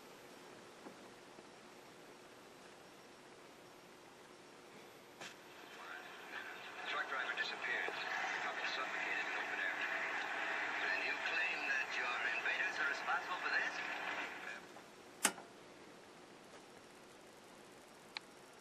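Sound of an old black-and-white TV programme, mostly voices, coming through the restored Admiral 20B1 television's own speaker, thin and lacking bass. It starts about five seconds in and stops near fourteen seconds. A single sharp click follows about a second later, as the set is switched off.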